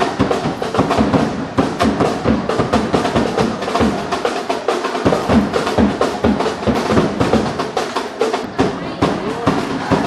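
Drums beating fast and without a break, bass and snare, with voices underneath.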